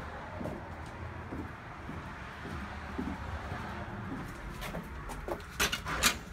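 Steady outdoor background with a bird's faint, low calls, then a few sharp clicks and knocks near the end as the front door is opened.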